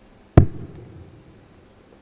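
A steel-tip dart thrown into a bristle dartboard: one sharp thud about half a second in, dying away over about half a second.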